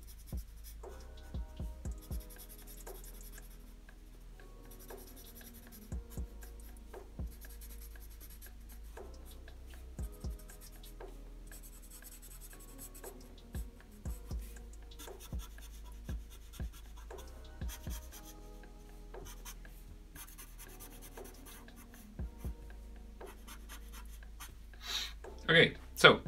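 Marker pen scratching on paper in short, irregular strokes and dabs while filling small shapes with solid black ink, over faint background music.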